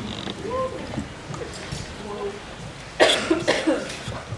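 Low murmur of audience voices, then a loud cough in a few quick bursts about three seconds in.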